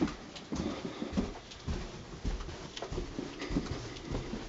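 Footsteps going down a flight of wooden stairs: irregular thumps with light clicks, about two a second.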